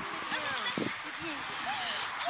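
Faint background talk from people standing around the field, over steady outdoor hiss, with a soft knock under a second in.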